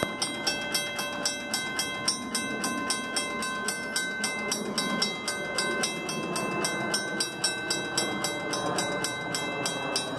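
Railroad crossing warning bell ringing steadily, about three to four strokes a second, signalling an approaching train while the gates are lowering.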